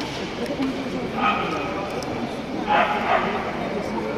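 A small dog yapping: one sharp yap a little over a second in, then two more in quick succession near three seconds, over a background of crowd chatter.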